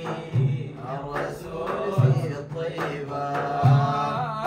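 A group of men chanting a Sudanese madih, a song in praise of the Prophet, together, accompanied by hand-struck frame drums. Three deep drum strokes fall about a second and a half apart, with lighter taps between them.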